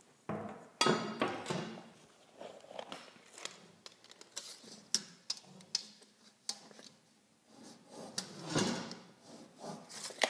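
Handling of measuring and marking tools against drywall: a pencil scratching along a metal straightedge about a second in, the metal rule clattering as it is put down, and scattered clicks and knocks as a tape measure is pulled out and held to the wall.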